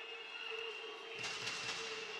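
Indoor arena crowd noise, a low hush that swells into louder murmur about a second in, with a faint steady high tone underneath.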